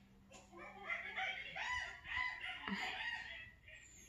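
A string of short, high vocal whoops and hoots, one after another, ape-like calls at the close of the song. Near the end comes a spoken 'yeah' and a laugh.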